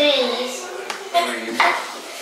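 Chef's knife slicing a cucumber on a wooden cutting board: a few sharp knocks of the blade against the board, under a child's voice repeating words.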